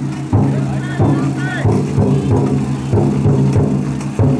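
Big taiko drum inside a chousa drum float, beaten in a steady repeated rhythm of a few strokes a second, with the voices of the bearers carrying the float over it.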